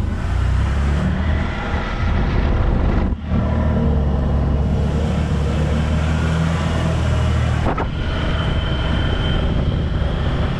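Can-Am Defender side-by-side's engine running steadily under way at about 4,650 rpm, heard from the cab. The engine note dips briefly about three seconds in, and about eight seconds in the low hum thins as a thin high whine comes in.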